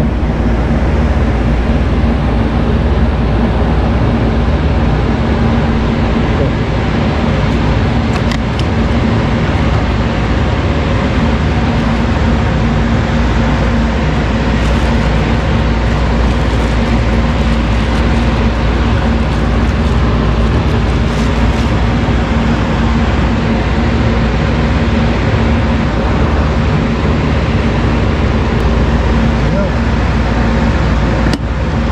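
Loud, steady machinery noise: a constant low rumble and hum with a hiss over it, unchanging throughout, with a few faint brief clicks.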